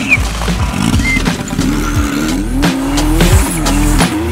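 Rally car engine revving hard, its pitch rising and falling, over background music with a beat.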